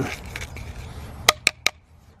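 Three sharp clicks in quick succession, about a fifth of a second apart, just past the middle, from the plastic soil-sampling tube and sample pot being handled.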